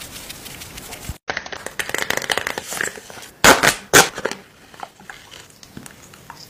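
Close-miked crinkling and crackling of a paper sheet face mask being handled and unfolded, with two loud rustles about three and a half and four seconds in.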